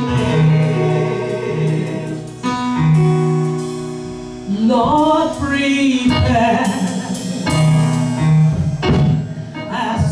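A woman singing a gospel worship song into a handheld microphone over held instrumental backing notes. Her voice swoops upward about halfway through and carries on with an emotional melodic line.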